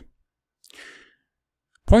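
A man's single audible breath, an unpitched sigh about half a second long, then his voice starts again near the end.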